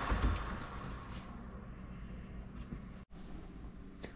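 Bambu Lab P1P 3D printer just switched back on: a steady low hum with a faint hiss, and a soft thump right at the start. The sound drops out for an instant about three seconds in.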